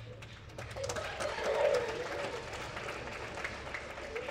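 Scattered hand clapping, a run of quick sharp claps mixed with children's voices.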